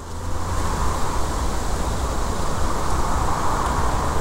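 Steady outdoor background noise: a rushing hiss over a deep, fluttering rumble, building up over the first second and then holding steady.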